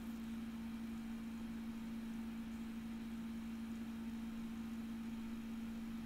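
Quiet room tone: a steady low hum on one constant pitch over a faint hiss.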